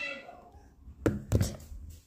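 A few dull knocks and bumps about a second in, the sound of a phone being handled and moved while it records, after a child's voice trails off.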